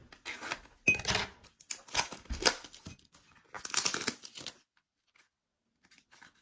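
Sonny Angel blind-box packaging being torn open by hand, crinkling and ripping in three bursts of about a second each.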